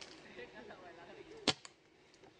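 A tranquilizer dart gun fired once: a single sharp pop about one and a half seconds in, followed closely by a fainter click.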